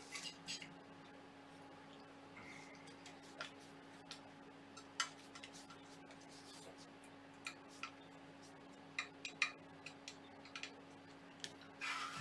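Irregular small clicks and light taps of a screwdriver and metal parts while screws on a 3D printer's aluminium Y-axis frame are worked, over a faint steady hum.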